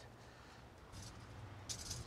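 Steel tape measure being handled and its blade pulled out: faint clicks and rattles about a second in and again near the end, over a low steady hum.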